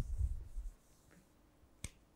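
A whiteboard eraser rubbing across the board surface, a dull low scrubbing that fades out within the first second. Near the end, a single sharp click.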